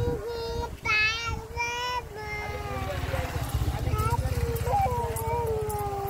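A toddler girl singing a made-up song in a high child's voice, holding long notes that slide and waver in pitch. A low rumble runs underneath from about two seconds in.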